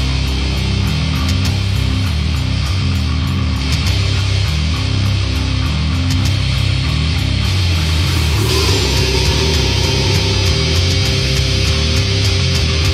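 Death/thrash metal band recording playing with heavy distorted guitars and drums. About eight and a half seconds in, a sustained higher note comes in over the band.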